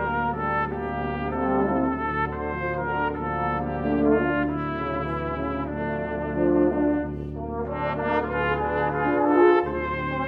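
Brass duet: a small valved brass instrument of the cornet family plays a slow, smoothly moving melody of held notes over a lower euphonium part.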